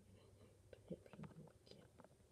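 Faint whispering voice in short fragments, with a few small clicks of a plastic toy figure being handled.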